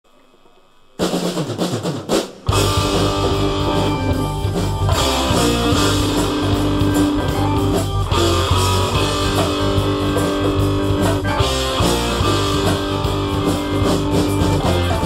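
Concert band playing the opening of a rock medley arranged for wind band. The music comes in about a second in, breaks off briefly just after two seconds, then the full band carries on steadily with a strong bass.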